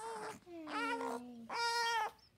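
Newborn baby crying in three short wails, the middle one falling in pitch and the last held steady; the parent wonders whether he is straining to poop.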